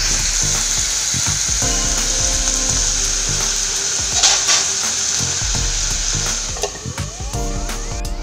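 Chopped mixed vegetables (carrot, capsicum, onion) sizzling steadily as they stir-fry in hot oil in a wide frying pan.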